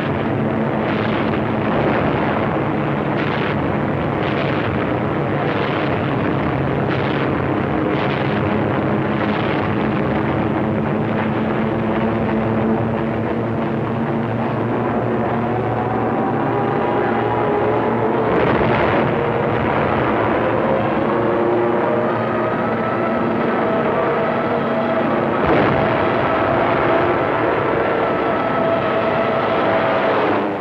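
Aircraft engine roar in a dive on an old film soundtrack. For the first ten seconds there is a thud about once a second, and through the second half several tones rise slowly.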